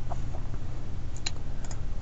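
A handful of short computer mouse clicks, a couple of them in quick pairs, over a steady low hum.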